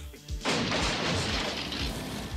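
Cartoon sound effect of timber crashing down: a long, noisy crash begins about half a second in. A song's steady beat runs underneath.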